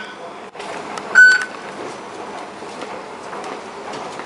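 MRT fare gate card reader giving one short, high beep about a second in, the acceptance tone as a stored-value fare card is tapped at the barrier. A steady hubbub of station ambience runs underneath.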